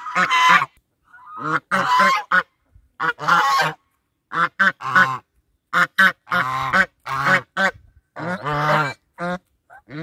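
Two domestic geese honking loudly and over and over, in quick runs of calls with short pauses between them.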